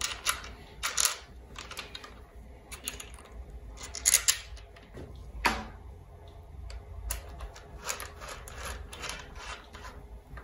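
Small metal bolts being fitted into a bicycle stem and handlebar by hand: scattered light clicks, taps and rubbing of metal on the stem, with louder clicks about four and five and a half seconds in.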